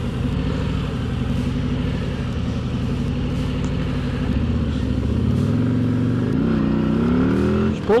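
2024 Harley-Davidson Road Glide's Milwaukee-Eight V-twin idling at a stop, then pulling away hard under throttle: the revs climb through first gear in the last couple of seconds, with a brief drop at the shift into second near the end.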